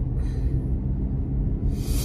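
Steady low rumble of a car's engine running, heard inside the cabin, with a short sharp breath blown out through pursed lips near the end.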